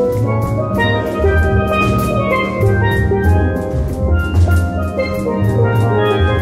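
Steel drum band playing: steel pans struck with mallets carry the melody and chords over low bass-pan notes, with a drum kit keeping a steady beat.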